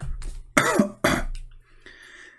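A man coughing and clearing his throat: about three short, loud coughs in the first second and a half.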